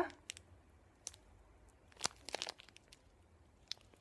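A small plastic bag holding tiny metal studs being handled: a few separate, faint crinkles and clicks spread through an otherwise quiet stretch.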